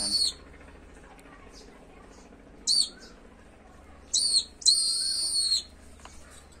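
A young peregrine falcon calling in shrill, high-pitched cries. One call cuts off just after the start, a short one comes about three seconds in, then a short call and a longer drawn-out one follow between four and five and a half seconds.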